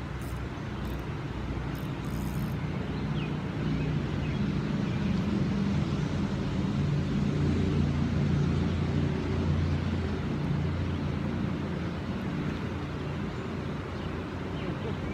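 Low engine drone of a passing motor vehicle that swells through the middle and then fades, over the steady wash of flowing river water.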